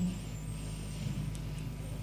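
Steady low hum with hiss: the background noise of an old tape recording in a pause between spoken prayers. A faint click comes about a second and a half in.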